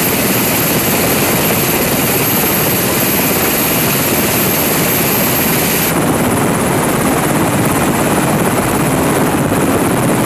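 Loud, steady running noise of a UH-60 Black Hawk helicopter's engines and turning rotor at close range, with the tone dulling slightly about six seconds in.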